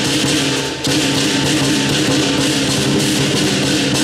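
Southern lion dance percussion band playing: a large drum with crashing cymbals and a ringing gong, in a steady, loud beat, with a short break a little under a second in before it picks up again.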